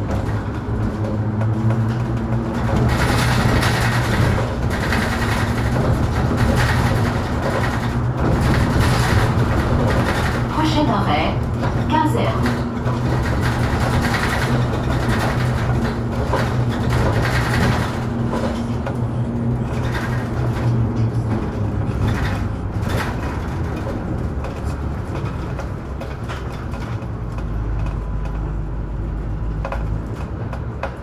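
Inside the cabin of a Mercedes-Benz Citaro G C2 articulated bus under way: a steady engine hum with rattles and knocks from the bodywork. The engine note drops about two-thirds of the way through.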